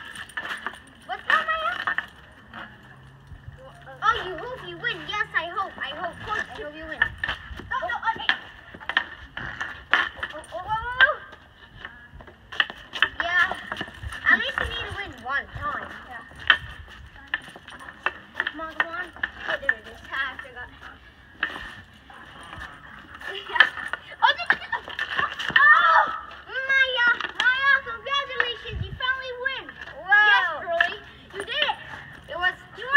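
Children's voices calling out during a street-hockey game, with frequent sharp clacks of hockey sticks and a ball hitting the asphalt.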